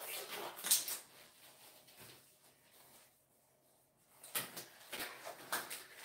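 A few faint clicks and knocks, then a near-silent stretch, then more faint knocks near the end.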